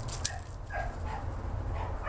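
A few short, faint animal calls in quick succession, over a steady low hum, with a sharp click just after the start.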